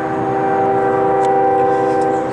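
Freight locomotive air horn sounding one long, steady multi-note chord as the train approaches.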